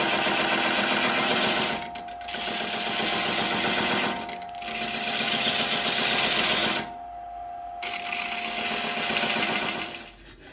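Wood lathe running with a steady whine while a tool or abrasive rasps against the spinning wooden bowl in four passes, with short breaks about 2, 4 and 7 seconds in. The sound drops away near the end.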